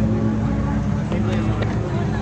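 A steady low engine hum that does not change, with faint talk from people nearby over it.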